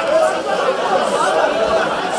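A crowd of people talking at once: a steady hubbub of many overlapping voices, no single speaker standing out.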